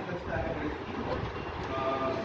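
Faint, echoing speech in a large room, heard over a steady background murmur.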